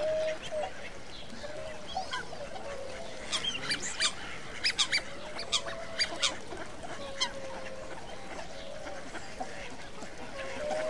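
Ducks calling: low, drawn-out calls throughout, with a run of short, sharp calls in the middle.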